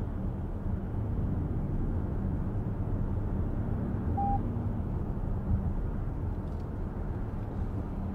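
Inside the cabin of a 2023 Lexus RX 500h hybrid SUV cruising on the road: a steady low rumble of tyres, road and drivetrain. A single short electronic beep sounds about halfway through.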